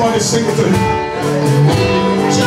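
Gospel worship music with guitar, with group singing over it.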